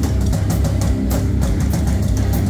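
Live hard rock band playing: distorted electric guitars and bass over a driving drum kit, with steady, regular drum and cymbal hits.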